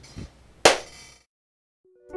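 A soft thump, then one loud, sharp hand clap with a brief ring. The sound then cuts off suddenly.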